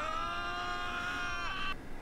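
A cartoon character's long, held scream on a nearly steady pitch, cutting off just before the end.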